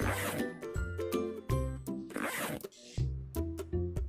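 Upbeat background music with a regular beat and bass line, overlaid by two brief swishing rasps: one at the very start and one about two seconds in.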